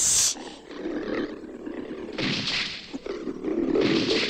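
Kaiju roaring: several loud, rough roars, one right at the start, another about two seconds in and a third near the end, with quieter stretches between.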